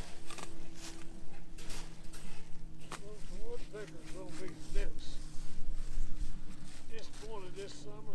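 Barbed wire being pulled taut on a fence: scattered clicks and scrapes of the wire against the posts, over a steady low hum, with faint talk a few seconds in and again near the end.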